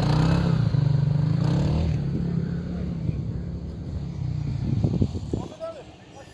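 Side-by-side UTV engine running hard and steady as the machine sits bogged down in about a metre of deep snow, unable to climb out. The engine sound drops away sharply about five and a half seconds in.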